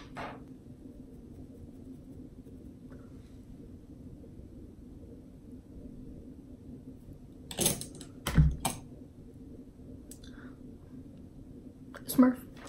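A low steady hum of room tone, broken about two-thirds of the way in by a few sharp clicks and knocks in quick succession, like small objects being handled or set down.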